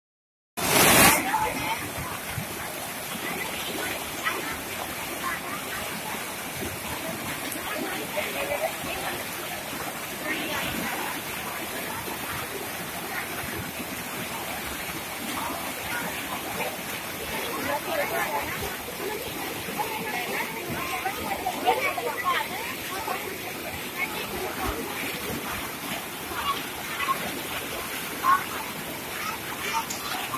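Steady rush of whitewater as a fast mountain river tumbles over and around boulders.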